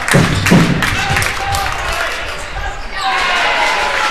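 Basketball bouncing several times on a wooden court during play, with voices and music in the hall around it.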